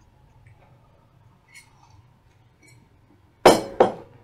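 A drinking cup set down on a hard desk: two sharp clinks about a third of a second apart near the end.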